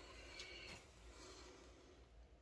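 Near silence: room tone, with a faint brief rustle about half a second in.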